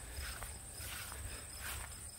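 Faint footsteps rustling through long grass, over a steady high trill of insects in the grass.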